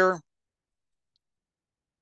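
A man's voice finishing a word, then near silence.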